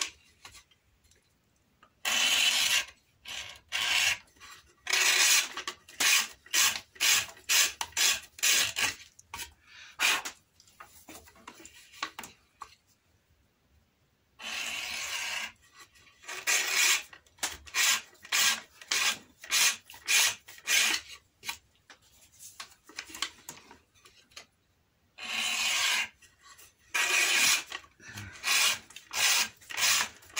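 The edge of a leather strap being beveled as it is pulled by hand through a vise-mounted beveling jig, in quick short strokes about two to three a second. Three longer pulls of about a second come shortly after the start, midway and near the end, with brief quiet pauses between runs.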